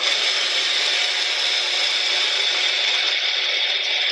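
Small personal blender running steadily at speed, grinding rice with a little warm butterfly pea tea; it switches on abruptly.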